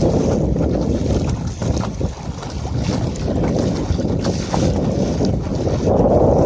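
Wind buffeting the microphone in a steady low rumble, with small splashes as choppy water slaps against the kayak's hull.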